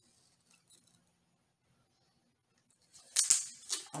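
Duct tape being peeled off a cattle prod's trigger: a few faint ticks of handling, then a short, loud ripping burst of several quick strokes about three seconds in.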